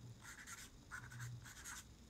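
Marker pen scratching on a paper note pad in three short, faint writing strokes.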